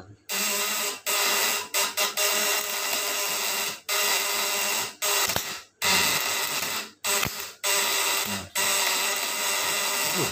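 The vibrating contact-breaker points (platina) of a homemade high-voltage pulse-DC inverter buzzing loudly under a lamp load. The buzz cuts out and starts again about ten times at uneven intervals.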